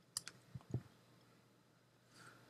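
A few faint clicks from a computer mouse during slider adjustments: two sharp ones just after the start, then two duller, lower ones about half a second later.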